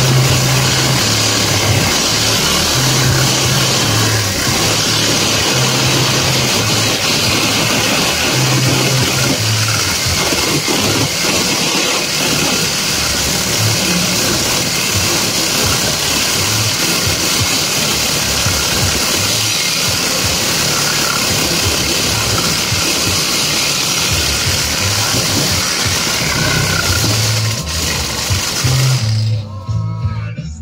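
Cordless reciprocating saw running continuously as its blade cuts through the wires of a rolled welded-wire fence, stopping about a second before the end. Background music with a steady bass line plays underneath.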